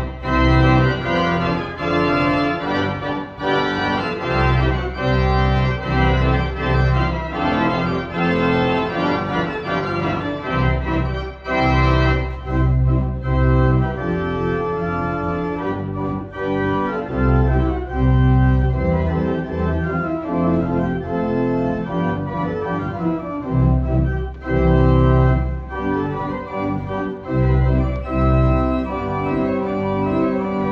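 Moser pipe organ playing a lively polka arrangement: sustained chords over a bass line that starts and stops in a steady rhythm.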